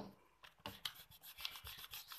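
A pencil line being rubbed out on paper with an eraser: faint, quick scrubbing strokes starting about half a second in. The mistaken line is being erased so that it can be redrawn.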